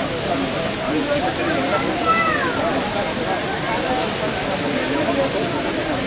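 Water falling and splashing steadily in a two-tier fountain, under many people talking at once, with no single voice standing out.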